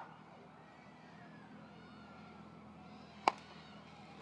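A baseball bat hitting a front-tossed ball once, a single sharp hit about three seconds in, over a faint steady background hum.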